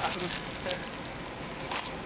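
Plastic cling film over a tray of cakes crinkling and rustling faintly as it is handled, with a sharper crackle near the end.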